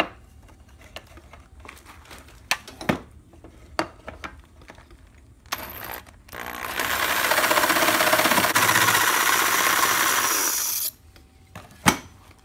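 Skil 4235 variable-speed jigsaw cutting through bamboo for about four and a half seconds, starting about halfway in and cutting off suddenly, to trim the excess off a piece. Light clicks and knocks of handling come before it, and a sharp knock near the end.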